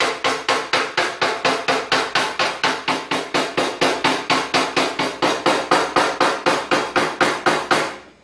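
Hammer tapping a steel tap-down punch against a car fender's sheet metal in a rapid, steady rhythm of about five taps a second, knocking down the raised edge around a dent in paintless dent repair.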